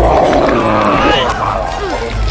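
Animal-like creature voice growling and yelping, with a rising cry about a second in, over faint film music.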